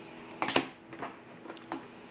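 Hands handling trading cards on a table: a short clatter of taps and rustle about half a second in, then a few fainter ticks.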